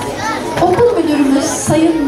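Speech only: a girl's voice announcing in Turkish into a microphone.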